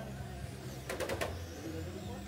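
Electric RC touring cars running on an indoor carpet track, with a faint high motor whine rising and falling as they pass, over a steady low hum. About a second in, a quick rattle of four sharp clicks.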